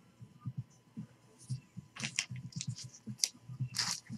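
Trading cards being handled and shuffled in the hands: soft scattered taps, thumps and clicks of card stock, busier in the second half.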